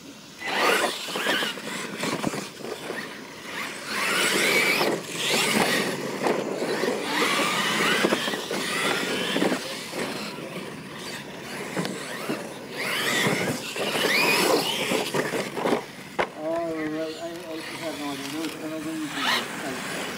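Battery-electric Losi LMT radio-control monster trucks racing on a dirt track: the motor whine rises and falls in pitch as they accelerate and let off, over tyre and dirt noise, with a few sharp knocks along the way.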